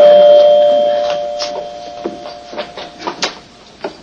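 Two-note door chime ringing, its tones sounding together and fading away over about three seconds, followed by a few scattered taps.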